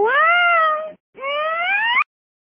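Two drawn-out meow calls. The first rises and then holds. After a short gap, the second rises steadily and is cut off suddenly.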